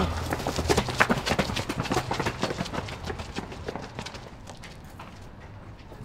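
Quick running footsteps on pavement that grow fainter and fade away over about five seconds, as a runner flees down the alley.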